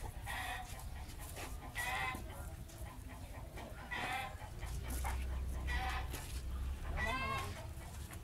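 Chickens clucking: a short call every second or two, with one longer call near the end.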